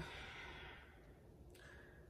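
A woman's faint exhale, a quiet sigh that fades over about a second, then a brief breath in near the end. Otherwise near silence.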